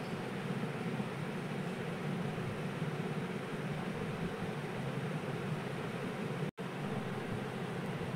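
Steady background noise, an even hiss with no distinct events, cutting out for an instant about six and a half seconds in.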